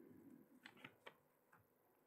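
Near silence, with a soft rustle and a handful of faint clicks from the pages of a Bible being leafed through on a lectern.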